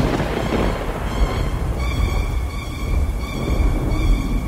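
Rolling thunder with rain, a sound effect with a long low rumble, over quiet held music tones.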